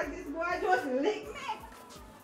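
A young woman's voice through a microphone, speaking for about a second and a half before it falls quiet; the words are not clear.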